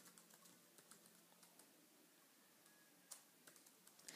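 Faint typing on a computer keyboard: scattered key clicks, several in the first second and a few more from about three seconds in, the loudest single click among them.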